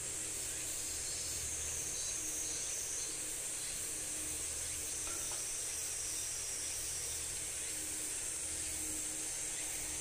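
Steady, high-pitched outdoor drone of an insect chorus, unchanging throughout.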